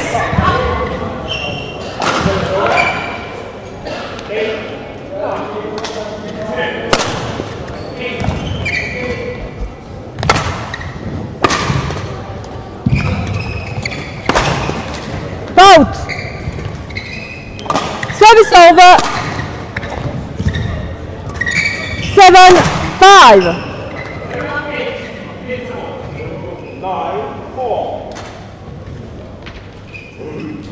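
Badminton rally in a large hall: a run of sharp racket hits on the shuttlecock and footfalls, with loud squeals of court shoes on the floor about halfway through and twice more near the end.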